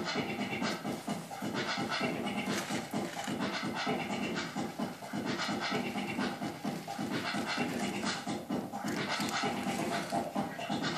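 Wooden stick scraping and smearing goopy, tacky resin paint across a plastic sheet: a quick, irregular run of scratchy strokes.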